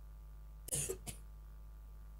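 A woman coughing into a handheld microphone: one cough about two-thirds of a second in, then a shorter second one. She has a cold and a sore throat.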